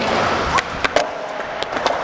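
Skateboard wheels rolling on smooth concrete, then the pop of the tail and several sharp clacks of the board hitting the concrete as a big flip attempt fails and the board comes down without the rider.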